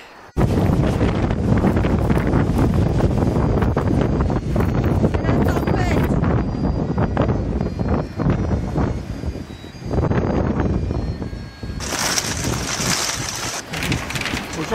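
Strong, gusty wind buffeting the microphone. Near the end it gives way to a higher hiss of heavy rain on a vehicle's windscreen.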